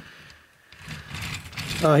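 Plastic wheels of an Optimus Prime toy truck rolling across a tabletop as it is pushed by hand: a light rolling noise that starts about a second in and grows louder.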